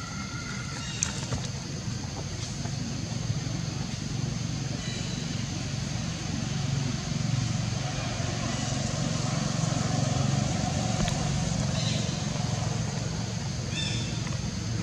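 Outdoor background: a steady low rumble of distant vehicle traffic that swells for a few seconds in the middle, over a constant high-pitched insect hum, with a few short high chirps near the start and the end.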